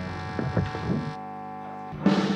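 Electric guitar amplifiers humming with mains hum between songs, a steady buzz of many tones, with a few faint string and handling noises in the first second.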